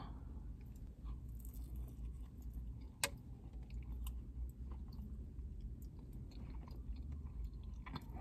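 A person chewing mouthfuls of a fluffy blueberry crumble donut, with small wet mouth clicks over a low steady hum. There is one sharp click about three seconds in.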